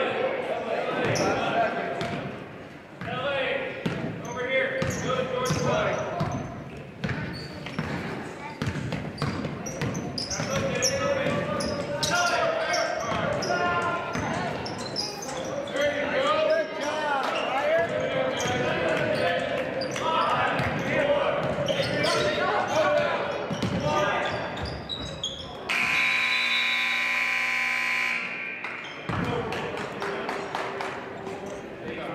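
Basketball bouncing on a hardwood gym court amid sneakers and voices calling out during play. Near the end, a steady scoreboard horn sounds for about three seconds, signalling a stoppage in play.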